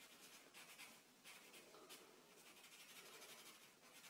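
Faint scratching of a felt-tip marker on paper, short irregular strokes as a small area is coloured in solid black.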